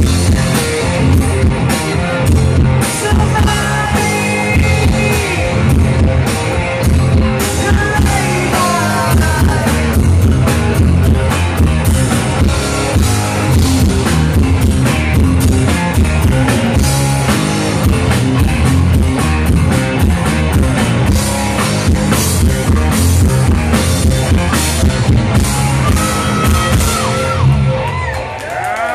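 A live rock band playing loud, with electric guitars, bass guitar and a drum kit.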